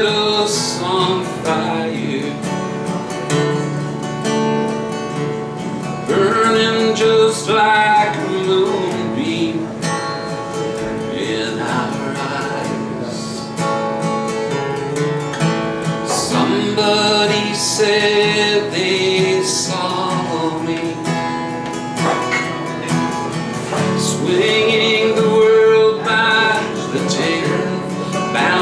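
Steel-string acoustic guitar played steadily in chords, with a man singing in phrases over it.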